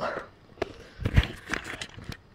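Handling noise from a handheld camera being swung around: a few short knocks and rustles, with a low thump just past a second in.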